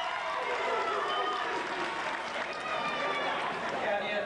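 Audience chatter: many voices talking over one another in a large hall, a steady murmur with no single clear speaker.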